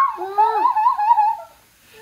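A child's high-pitched, wordless squeal of excitement, its pitch wavering up and down, stopping about a second and a half in.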